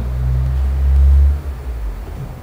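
A loud low rumble lasting about a second and a half, then dying away.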